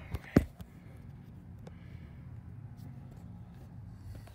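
A sharp knock about half a second in, just after a smaller tick, followed by a low steady hum.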